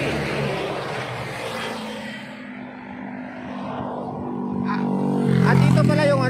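A motor vehicle engine running with a steady low hum that grows louder about five seconds in.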